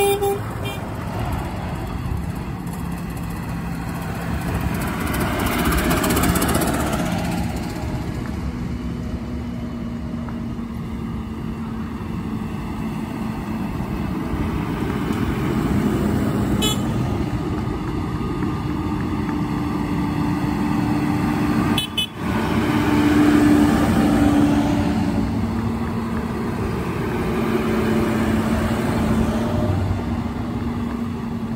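A line of tractors driving past one after another, their diesel engines running steadily, with the noise swelling as each one goes by, about six, sixteen and twenty-three seconds in. A steady low drone runs under the engine noise.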